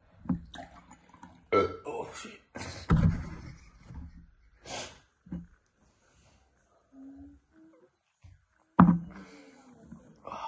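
A plastic milk jug and a drinking glass being handled and set down, with several knocks, the loudest about three seconds in and just before the end, between gulps of milk and sharp breaths from a mouth burning with chilli heat.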